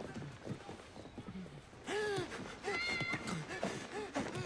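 An animal crying out, a short rising-and-falling call about halfway through followed by a thinner, higher call, over street noise and scattered voices.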